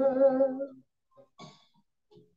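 A man sings a Romanian Christian song into a handheld microphone, holding a note with vibrato that ends less than a second in, followed by a pause.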